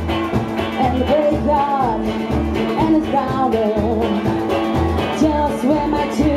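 Live trash-country band playing: a woman sings into a microphone over electric guitar and drums, with a steady low beat.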